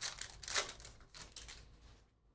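The foil wrapper of a Panini Prizm Premier League hobby pack being torn open and crinkled by hand: a quick run of crackles, loudest about half a second in, then dying away.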